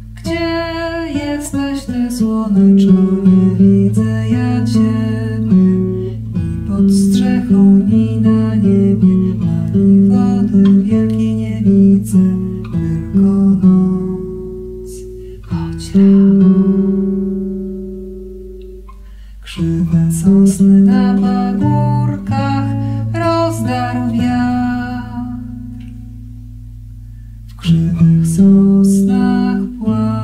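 Nylon-string classical guitar played with a woman singing over it. Twice the playing stops on a chord that is left to ring and die away, about halfway through and again shortly before the end, before the song picks up again.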